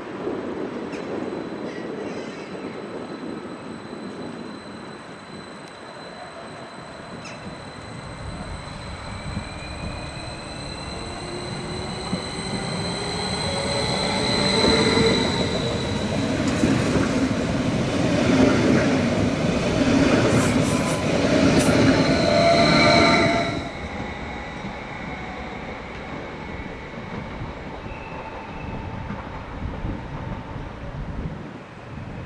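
Stadler Flirt 3 electric multiple unit pulling out and passing close by. Its electric whine rises in pitch as it accelerates, and it grows loud as the cars go past. The sound drops away suddenly about three-quarters of the way through as the end of the train clears.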